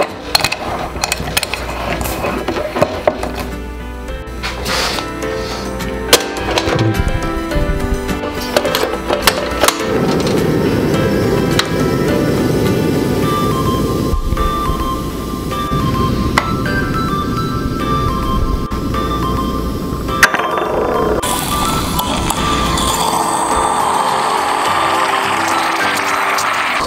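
Background music throughout. From about ten seconds in, a steady hiss from a gas stove burner heating a Bialetti Brikka moka pot. Near the end, sputtering as the pot starts pushing coffee up into the upper chamber.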